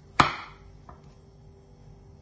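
A kitchen knife chopping down through a frozen ice-cream wafer sandwich block and hitting the countertop beneath: one sharp knock, then a faint tick under a second later.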